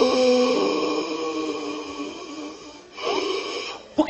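A man's drawn-out, wordless moaning sound, held for about two and a half seconds, then a shorter one whose pitch rises near the end.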